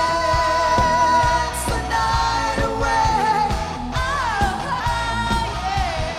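Live rock band playing with singing: long held vocal notes over electric guitar and a steady drum beat.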